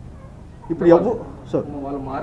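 A man's voice: after a short pause with only low room noise, a brief spoken phrase begins a little under a second in and picks up again near the end.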